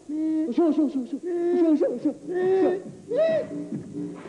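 A man hooting and warbling through cupped hands: a string of short pitched calls that arch up and down in pitch, several a second, with brief pauses between runs.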